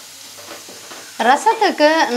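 Tomato, green chilli and curry-leaf mixture sizzling in an aluminium kadai on a gas burner, stirred with a slotted ladle. A voice comes in a little past halfway and covers it.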